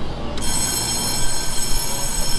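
Taiwan Railway electric multiple-unit train rolling slowly into the platform before stopping: a low rumble, with a steady high-pitched whine setting in suddenly about half a second in.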